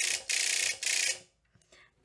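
Derminator 2 electric microneedling pen running on its fast setting: a loud, high-pitched mechanical buzz with a couple of brief dropouts, which stops a little over a second in as the device is switched off.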